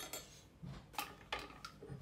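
Light clicks and knocks of kitchen glassware and a metal mesh strainer being handled on a wooden cutting board, with two sharp clicks about a second in.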